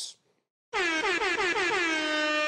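A brief dead-silent gap, then a loud, steady horn-like tone with many overtones, its pitch dipping slightly at the start and then held. It is an edited-in sound effect marking the change to a new segment.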